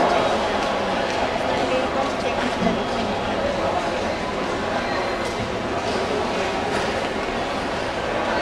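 Airport terminal hall ambience: indistinct chatter of many voices over a steady background noise, with no close speaker standing out.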